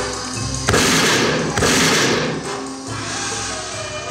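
Two loud gunshot sound effects about a second apart, each starting suddenly and dying away over most of a second, over music.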